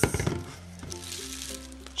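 A short crinkle of plastic grocery bags being handled in the first half-second, then soft background music with a steady low bass note that changes about a second in.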